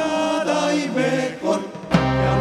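Commercial jingle music with voices singing held, gliding notes over light accompaniment; the bass drops out and comes back in right at the end.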